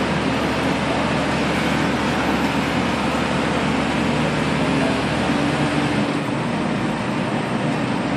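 Diesel engines of mobile cranes running steadily under load during a tandem lift, a dense continuous drone; the deepest rumble drops away about six seconds in.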